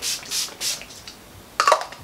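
Urban Decay All Nighter setting spray's pump bottle misting the face, three quick spritzes in the first second, each a short hiss, setting the finished makeup. A short vocal sound follows near the end.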